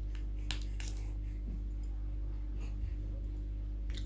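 A short spritz from a pillow-mist pump spray bottle just under a second in, preceded by a small click, over a steady low electrical hum.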